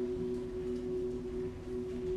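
Soft background score of steady, sustained low tones held under a pause in the dialogue.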